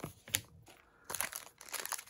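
Shiny foil wrapper of a trading-card pack crinkling as it is picked up and handled, starting about a second in, after a light click near the start.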